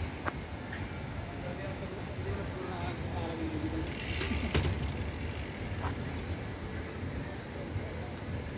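Outdoor city ambience: a steady low background rumble with faint, indistinct voices of passers-by, and a brief hiss about four seconds in.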